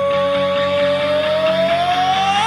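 Hard rock recording in an instrumental passage: a single long sustained lead note, most likely electric guitar, slowly bending upward in pitch over a steady band backing.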